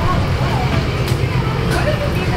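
Trolley-replica bus's engine idling at the curb, a steady low rumble, with people talking in the background.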